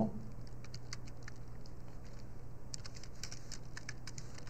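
Computer keyboard being typed on, a few scattered keystrokes with small gaps between them, over a faint steady low hum.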